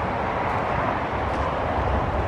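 Steady outdoor background noise, a low rumble with hiss, unchanging throughout.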